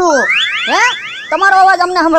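A comic sound effect: a quick run of rising whistle-like sweeps, repeated several times in about a second, then a voice speaking with a sliding, exaggerated pitch.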